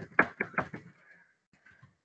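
Computer keyboard typing: a quick run of key clicks in the first second, then a few fainter keystrokes.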